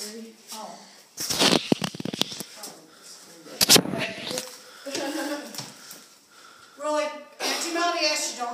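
Voices, with a quick series of sharp knocks and rattles about a second in and another single sharp knock near the four-second mark.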